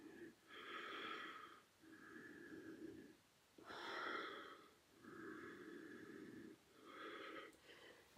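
A woman's faint, regular breathing during a held abdominal yoga posture: soft breaths alternating in and out about once a second.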